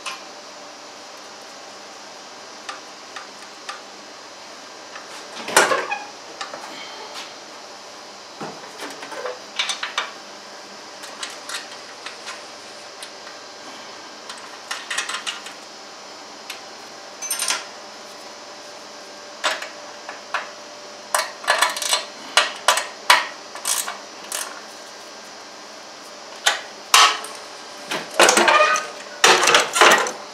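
Scattered metallic clicks, clinks and light rattles of hands and tools working on the steel frame of a Scag Tiger Cub zero-turn mower while the seat cable is refitted. The clatter comes quicker near the end, over a steady hum.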